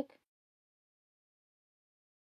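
The last fragment of a spoken word at the very start, then dead silence with no sound at all.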